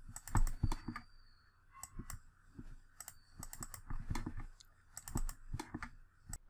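Irregular, fairly quiet clicks of a computer mouse and keyboard, some in quick clusters, as lines are selected and offset in a CAD program.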